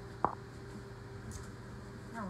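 A running microwave oven hums steadily, with one light knock about a quarter second in.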